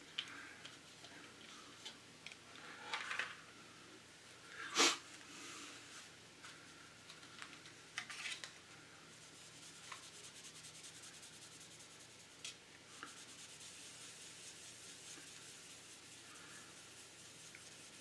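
Faint rubbing of a microfiber cloth working coarse polishing compound over the glossy black painted plastic body of a scale model car, with a few light handling knocks and clicks, the sharpest about five seconds in.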